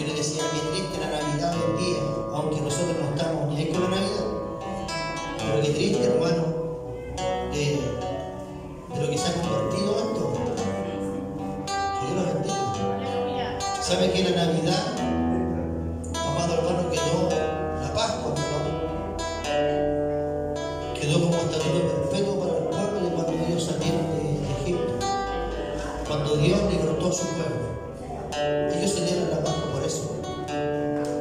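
Acoustic guitar music playing steadily, with a voice over it.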